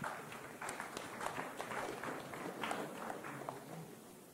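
Rustling and irregular light knocks from a handheld microphone being handled as it is passed from one person to another.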